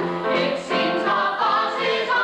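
A stage-musical cast of men and women singing a show tune together in chorus, in sustained, moving notes.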